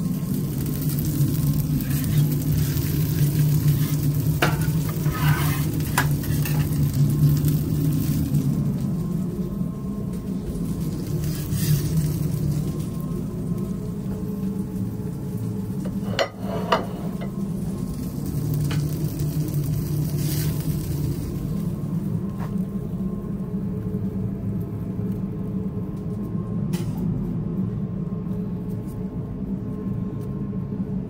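Restaurant kitchen sound: food sizzling on the grill over a steady low machine hum, with a few short clinks and knocks of plates and utensils, the sharpest about sixteen seconds in.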